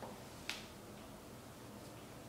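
A single sharp click about half a second in: a small dog treat dropped onto a hard vinyl floor. Faint room tone follows.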